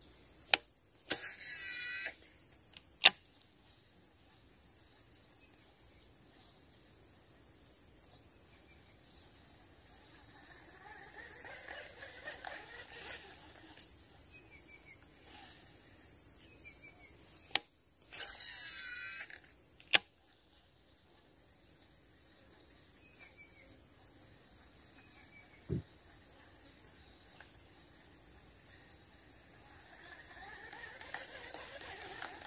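Baitcasting reel casting twice: each time a sharp click, about a second of the spool whirring, then another sharp click as the line is stopped. Under it runs a steady high-pitched insect drone, and a single dull thump comes near the end.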